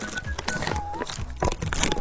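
Plastic candy packaging crinkling with quick sharp clicks, over light background music.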